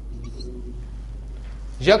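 A steady low mains hum fills a pause in speech, with a man's voice starting with a rising syllable near the end.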